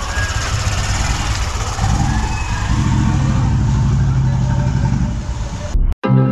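Hero Glamour XTEC motorcycle's 125 cc single-cylinder engine running, settling into a steady hum about two seconds in. It cuts off abruptly just before the end.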